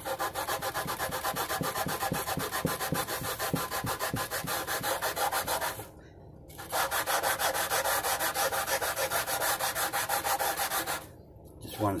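Sanding block with 220-grit paper rubbed back and forth along a mandolin's frets to level them, in quick, even strokes. The strokes stop briefly about halfway through, start again, and stop near the end.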